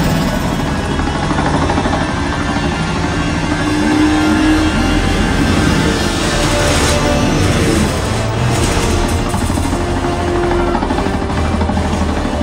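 Action-film soundtrack: music over engine and vehicle noise, with heavy deep bass throughout and a few rising and falling engine-like pitch sweeps in the first half.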